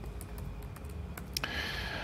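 A few faint, scattered keystrokes on a laptop keyboard as code is typed in.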